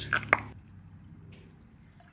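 Faint drips of soapy water falling from a foam cannon bottle into a plastic bucket of water, after a sharp tick about a third of a second in.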